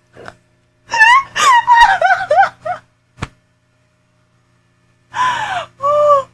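A woman laughing hard: high, wavering cries of laughter, then a pause and a loud gasping breath near the end. A single sharp click falls in the middle of the pause.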